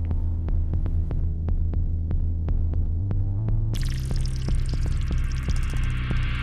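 Closing background music of a deep, throbbing bass drone under a steady ticking pulse of about four ticks a second. A bright shimmering swell comes in about four seconds in.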